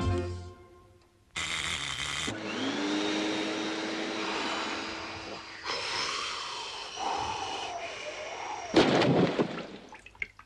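Cartoon soundtrack of electronic sound effects: music fades out, then a sudden noisy burst lasting about a second. A tone glides up and holds steady for about three seconds, then wavering, falling tones follow. Near the end comes a loud, short noisy burst.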